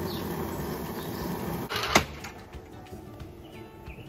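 Gas grill burners running under food on the grate: a steady rushing noise for about the first two seconds. It ends in a sharp click, after which it is much quieter with only faint ticks.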